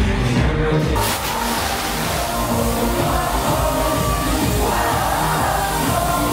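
Loud electronic dance music from a DJ set with a steady beat; about a second in, a loud even hiss sets in over it and keeps going.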